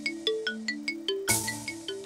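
Background documentary music: quick, light chiming notes, about four or five a second, over held low notes that step upward. A brief rush of noise cuts across it a little over a second in.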